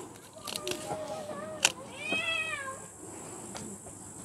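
A cat meowing: one drawn-out meow that rises and falls in pitch about two seconds in, with fainter calls before it. A single sharp click comes just before the long meow.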